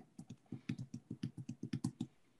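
Typing on a computer keyboard: a quick, uneven run of key clicks, several a second.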